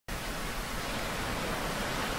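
Steady, even hiss-like noise with no distinct events in it.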